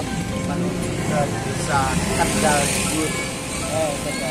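Road traffic, motorcycles and cars, running past on a street as a steady rumble, with voices and music over it.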